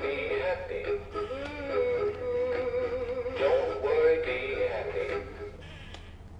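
Big Mouth Billy Bass animatronic singing fish playing its recorded song, a male singing voice with backing music. The song stops about five and a half seconds in, leaving a faint steady hum.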